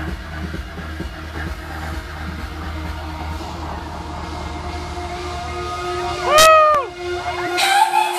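Electronic dance music from a live DJ set played over a large PA system, a steady bass-heavy beat. Near the end a loud pitched swoop rises and falls, and the bass drops out.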